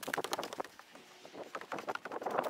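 Footsteps: a quick run of crunches and knocks as someone walks on gravel and on wooden deck stairs.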